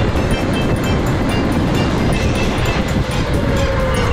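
Electric go-kart running at speed: a steady motor whine that falls slightly near the end, over rumbling tyre and track noise.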